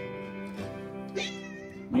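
Domestic cat giving one drawn-out, displeased meow about halfway through, while being held against her will. Soft guitar background music plays under it.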